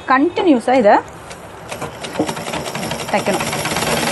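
Usha sewing machine set running fast, its needle mechanism making a rapid, even clatter that grows louder over the last three seconds. It has just been oiled and is stitching over a waste cloth to work off the excess oil, and it sounds normal.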